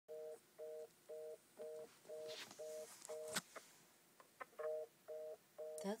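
Landline telephone handset sounding a fast busy signal: a two-tone beep repeating about twice a second, breaking off for about a second in the middle and then resuming. A few clicks and a sharp knock come just before the pause.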